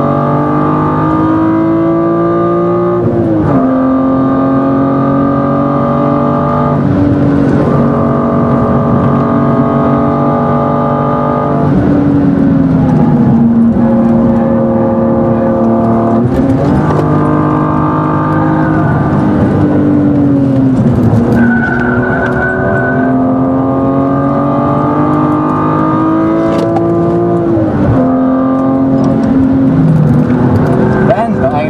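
BMW E36 M3 straight-six engine heard from inside the cabin at full throttle. Its pitch climbs and then drops sharply about six times at gear changes. A brief tyre squeal comes about two-thirds of the way through.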